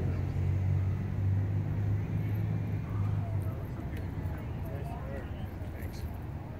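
Low steady hum of a car engine running nearby, fading out about halfway through, with faint distant voices.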